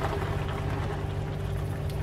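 Sweet-and-sour sauce simmering in a frying pan, a faint steady bubbling hiss over a constant low hum.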